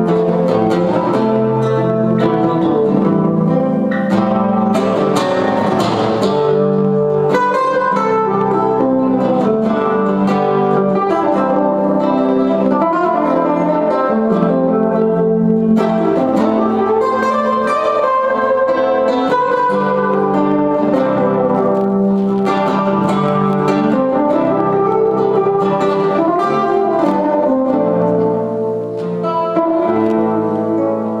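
A trio of guitars playing jazz together, two acoustic guitars and an archtop jazz guitar, with plucked melody lines over chords. The playing eases in loudness briefly near the end.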